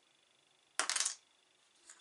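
A brief clatter of small hard plastic model-kit parts clicking against each other in the fingers, a quick run of ticks about a second in, then a faint single click near the end.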